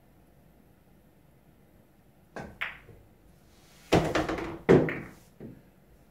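Pool shot on a home table: the cue tip strikes the cue ball a little over two seconds in, with a sharp click of balls colliding just after. Then come two loud thunks with a low rumble through the wooden table, and a lighter knock shortly after.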